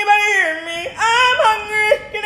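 A high voice yodeling in short phrases, each note breaking suddenly up or down in pitch.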